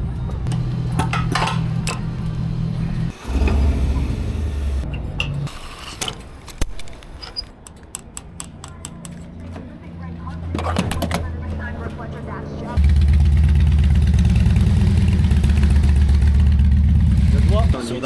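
Motorcycle engines running at low speed in several stretches, with a few clicks in between. The loudest stretch is a steady low drone over the last five seconds, and it cuts off suddenly near the end.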